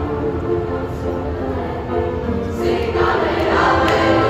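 Junior-high mixed chorus singing in parts with piano accompaniment, swelling louder and brighter in the second half.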